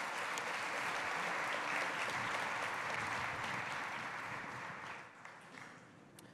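Applause from a large seated audience, steady and then fading away near the end.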